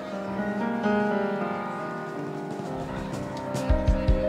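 Piano playing a blues intro of held chords and notes, the band's other instruments joining softly. Near the end a few deep thumps come in as the drums join.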